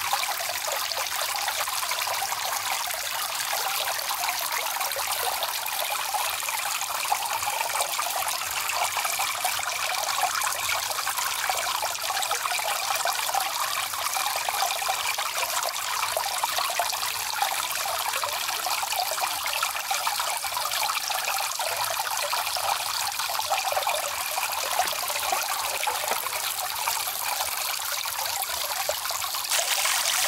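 Small tiered concrete garden fountain running, water trickling and splashing steadily into the pond.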